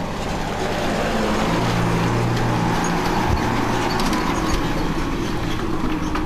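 Tata lorry's diesel engine running with a low, steady hum.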